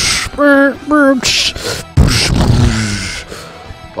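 A man making gunshot and explosion noises with his mouth: a few sharp hissing blasts, the one about two seconds in heaviest and dying away slowly, over steady background music.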